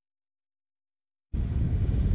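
Dead silence for about a second, then wind buffeting the microphone starts suddenly: a loud, low, rumbling roar.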